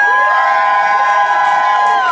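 Audience cheering with several high-pitched screams held at once, falling away at the end.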